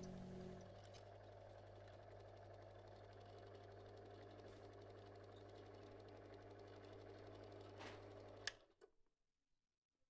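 The last notes of an acoustic guitar die away in the first second, leaving a faint, steady low hum of room and recording equipment. It ends about eight and a half seconds in with a sharp click, then silence.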